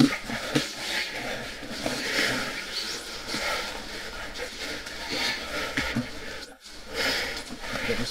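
Indistinct, low voices over a steady hiss, with a brief drop to quiet about six and a half seconds in.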